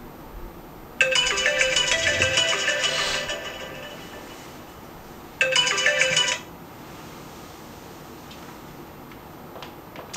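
Smartphone alarm ringtone playing a melody, loud for about three seconds before fading away, then sounding again for about a second and cutting off suddenly.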